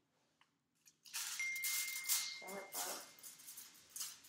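Aluminium hair-colouring foils crinkling and rustling as they are picked up and handled, starting about a second in, with a thin steady high tone sounding through the middle.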